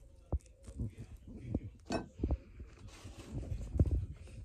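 Close-up biting and chewing of a slice of pizza: irregular soft clicks and low thumps of mouth noise, the loudest near the end.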